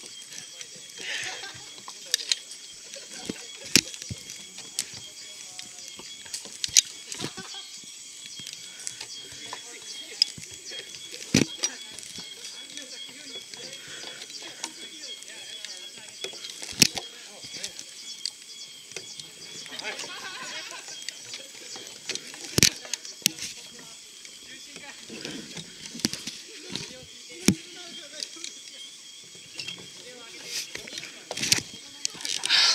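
Irregular sharp clicks and knocks from safety gear, rope and hands while crossing a treetop ropes-course obstacle, over a steady high hiss.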